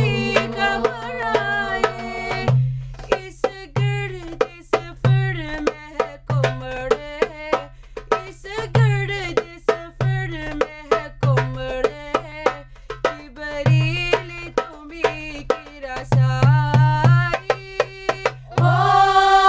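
A girls' nasheed group singing together in unison, over a steady rhythm of sharp drum strikes and low thuds.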